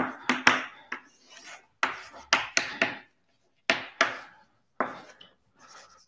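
Chalk writing on a blackboard: a series of short taps and scrapes in irregular strokes, with brief pauses between them.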